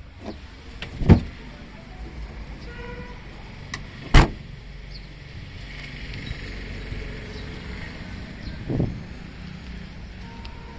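Boot lid of a Maruti Suzuki Dzire sedan slammed shut about four seconds in, a single sharp bang that is the loudest sound. It is preceded by a dull thump about a second in and followed by a softer thump near the end, over a low steady rumble.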